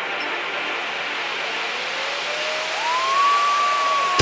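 Trance build-up with the bass and beat cut out: a rushing white-noise sweep, with a thin synth tone that glides up in pitch from about a second and a half in and holds high near the end.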